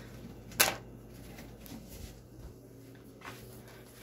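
Quiet kitchen room tone with a steady low hum, broken by one short, sharp noise about half a second in and a fainter one near the end.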